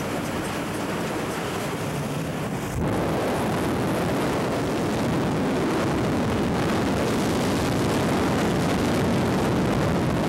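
Steady rush of wind and propeller-plane engine noise at an open jump door, stepping suddenly louder about three seconds in as the camera goes out into the slipstream.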